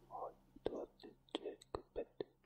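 Faint, breathy whispering broken by several sharp, short clicks.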